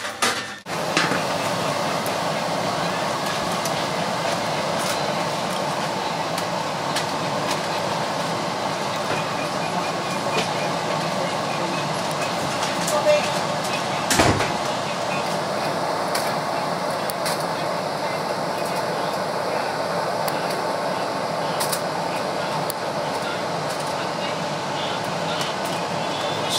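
Hot sugar-glazed bacon sizzling steadily on a foil-lined baking tray, with one sharp knock about halfway through.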